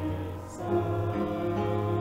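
A group singing a slow hymn on long held notes, with a short break between lines about half a second in.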